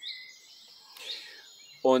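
Birds chirping faintly in a pause, a few short high calls with quick glides in pitch over a light outdoor background. A man's voice starts again near the end.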